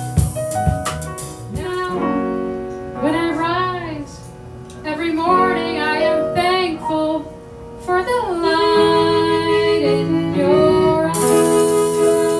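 Live jazz band: a harmonica plays a wavering, bending melody over piano and upright-bass accompaniment, with the cymbals coming back in near the end.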